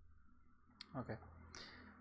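A single sharp mouse click about a second in, followed at once by a man's spoken "okay".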